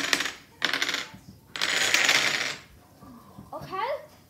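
A ring of dominoes toppling in a chain reaction on a wooden table: rapid, dense clicking clatter that comes in three waves and stops about two and a half seconds in.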